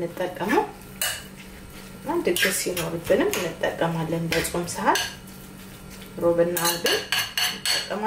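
Metal spoon stirring soaked injera pieces in a ceramic bowl, with repeated clinks and scrapes against the bowl. A voice chants in short stretches between the clinks.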